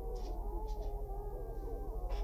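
Several women's voices moaning and wailing together, faint, their pitches wavering up and down.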